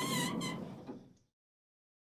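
Sound effect of a heavy vault door swinging open, with ringing tones that fade out about a second in, then dead silence.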